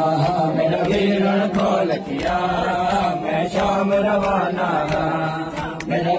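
Men chanting a noha, a Muharram lament, together in a long-held refrain. Regular sharp slaps of hands beating chests (matam) keep time about once a second.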